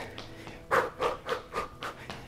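A woman's sharp exhaled breaths, short "psh" bursts about three a second, each timed to a fast jab-cross punch while shadowboxing.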